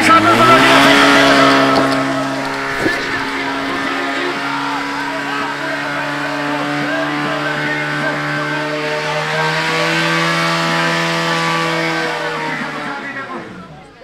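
Portable fire pump's engine revving up hard within the first half second and held at high revs while it drives water through the hoses to the nozzles, rising a little further later on, then winding down near the end as the run finishes.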